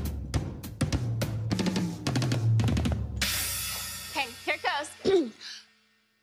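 Drum kit played: a fast run of drum hits with low booming toms and bass drum, then a cymbal crash about three seconds in that rings out. Near the end come a few short pitched sounds that bend up and down.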